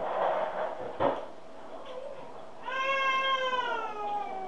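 A cat meowing: one long meow with a slowly falling pitch starting a little under three seconds in, after a short burst of noise and a knock about a second in.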